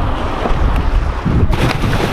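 Wind buffeting the microphone, then, about one and a half seconds in, the splash of a body belly-flopping flat onto lagoon water.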